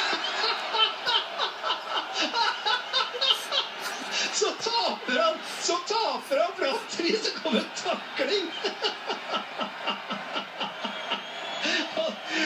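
Men laughing hard, in rapid repeated fits.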